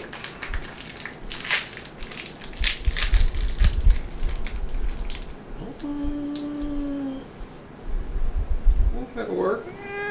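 Tape being peeled off and crumpled from a freshly painted plastic LED puck light housing: a run of crackling and ripping for the first five seconds or so. Then come two short vocal sounds, one held on a steady pitch for about a second and one near the end that slides in pitch.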